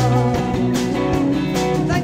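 Live rock band playing an instrumental passage: electric guitar, keyboards, bass and drums keeping a steady beat, with a held melody note wavering in pitch at the start.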